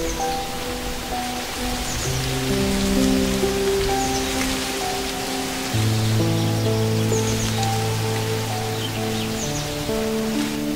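Slow ambient music of long held notes, with a deep bass note coming in about six seconds in, over a steady rain-like hiss. A few faint, short, high bird chirps sound now and then.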